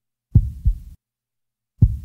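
Heartbeat sound effect used as a suspense cue: two deep double thumps (lub-dub), about a second and a half apart, with dead silence between them.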